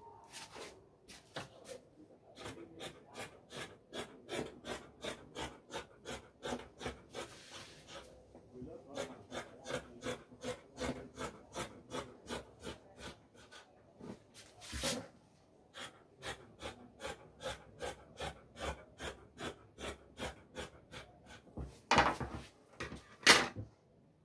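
Scissors cutting through fabric in a steady run of snips, about two to three a second. There is a louder knock about two-thirds of the way through and two more near the end.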